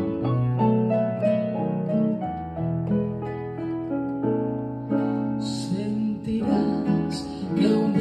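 Electronic keyboard with a piano sound playing the instrumental introduction to a pasillo in held notes and chords.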